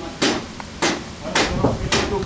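Four sharp wooden knocks about half a second apart: sawn timber slabs and offcuts knocking against each other as they are handled.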